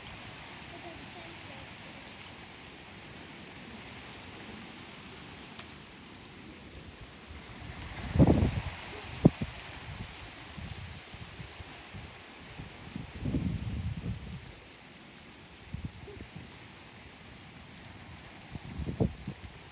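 A steady outdoor hiss with a few dull thuds of hands and feet landing on a grass lawn during handstand and cartwheel practice. The loudest thud comes a little past halfway, with a sharper knock about a second after it and softer thuds later.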